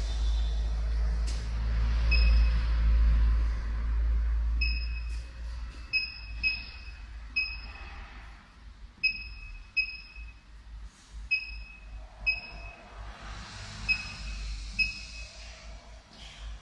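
Keypad of a Yupack pallet stretch wrapper's PLC control panel beeping: about a dozen short, high electronic beeps at uneven spacing as buttons are pressed to step through the settings menu. A low rumble runs underneath, strongest in the first few seconds.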